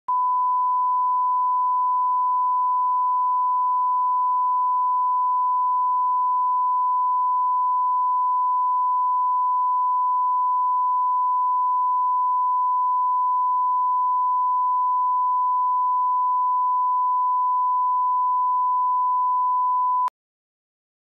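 Broadcast line-up reference tone played with colour bars: a single steady 1 kHz sine tone at the −18 dBFS (PPM 4) reference level, held unbroken and cutting off suddenly at the end.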